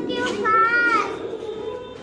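Toddlers' voices: a child calls out in a high, drawn-out voice about half a second in, over the steady chatter of a group of young children.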